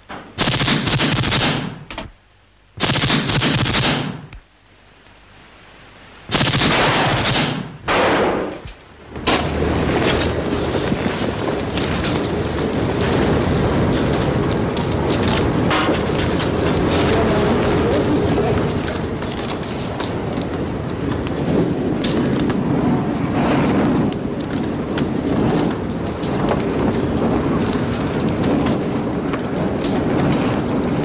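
Old war-film soundtrack: four long bursts of automatic gunfire in the first nine seconds, then a continuous loud din of crackling gunfire and commotion.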